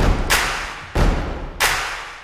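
Four heavy booming percussion hits in an uneven beat, the first two close together, each ringing out and fading over about half a second.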